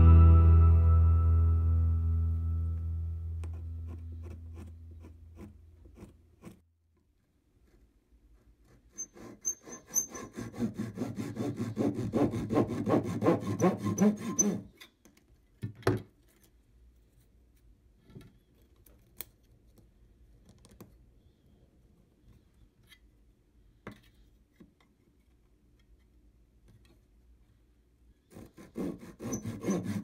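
Fine-toothed razor saw cutting thin wooden strips in an aluminium mitre box, in quick back-and-forth rasping strokes near the end. A similar run of rasping strokes comes midway, followed by a single sharp knock. Background music fades out at the start.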